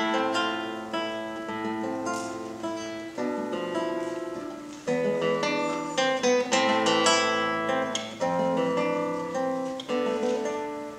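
Solo classical guitar played fingerstyle: plucked notes and chords over bass notes that ring on and fade, with fresh, louder chords struck about five and eight seconds in.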